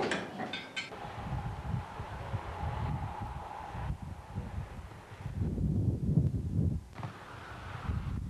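Wind buffeting a camcorder microphone outdoors: an irregular low rumbling that grows strongest about two-thirds of the way through, with a faint steady hum in the first few seconds.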